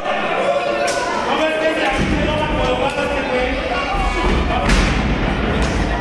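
Wrestlers' bodies thudding onto the boards of a wrestling ring, with a sharp slam about a second in and another louder one near the five-second mark, the ring rumbling in between, over a crowd's shouting voices.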